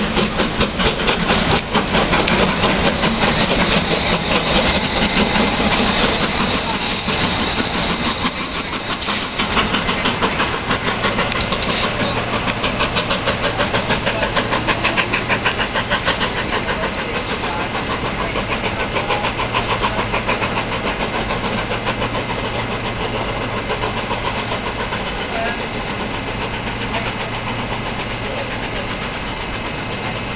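Metropolitan Railway E class steam tank locomotive No. 1 pulling away, its exhaust beats growing fainter as it draws off, with a thin high squeal about six to nine seconds in. A steady low hum comes in about halfway through.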